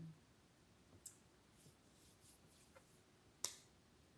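Near silence of a quiet room, broken by a faint click about a second in and a sharper click near the end.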